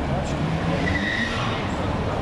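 Steady road traffic noise, with a brief high-pitched squeal about a second in.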